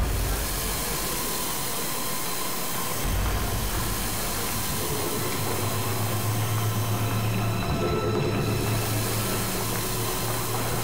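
Steady rumble and hiss of a train, with a low hum that grows stronger about three seconds in.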